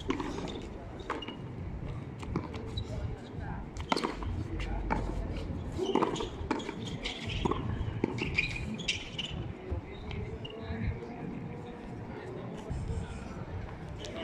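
Frontón a mano rally: the ball smacked by hand and slapping off the wall and concrete floor, sharp cracks at irregular intervals about every one to two seconds, with players' voices and shoe scuffs between them.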